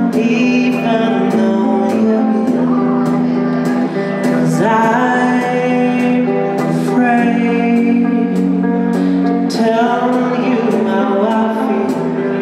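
A live band playing: a man singing over sustained keyboards and electric guitar, with drums keeping a steady beat on the cymbals.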